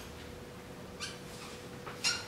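Dry-erase marker squeaking faintly on a whiteboard as letters are written, in short strokes: one at the start, one about a second in and one near the end, over a thin steady hum.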